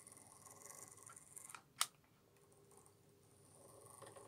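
Faint steady whirr of a small model locomotive chassis with a worm-drive motor running along the track, with one sharp click a little under halfway through.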